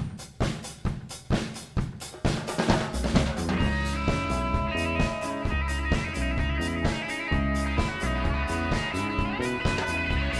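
A live rock band starts a song. The drum kit plays alone for about the first three seconds, then the full band, with bass and electric guitars, comes in and plays steadily.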